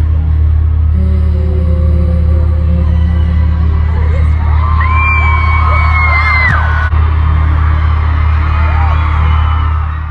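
Live stadium concert captured on a phone: loud amplified music with heavy, steady bass, and a long high note held from about halfway through.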